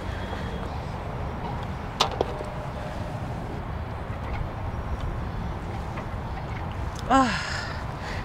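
A single sharp click about two seconds in: a putter striking a golf ball on the green, over steady outdoor background noise. A short vocal sound comes near the end.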